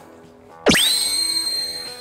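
An edited-in musical sound effect: a quick rising sweep about two-thirds of a second in that settles into a high ringing tone and slowly fades.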